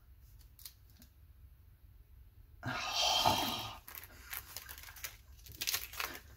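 Paper being handled on a craft table: a loud rush of paper sliding and rustling lasting about a second, a little before the middle, then light rustles and small ticks as pieces are moved about.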